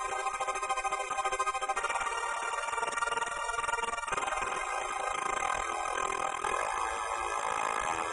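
Synthesizer pad chords (Thor's 'Epic Poly' patch) pulsing in a fast, rhythmic tremolo from the Ammo 1200BR's LFO-driven Electro-Switch. The chord changes a couple of times.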